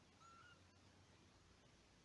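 Near silence, broken by one faint, brief, high-pitched kitten mew near the start.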